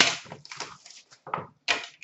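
Hands handling a cardboard hockey card box and its packaging on a glass counter: a few scattered clicks, taps and rustles, the loudest right at the start.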